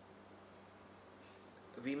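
Faint high-pitched chirping, about four short pulses a second, which stops as a man's voice starts near the end.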